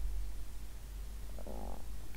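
Low, steady rumble of room tone, with a faint short breath-like sound near the end.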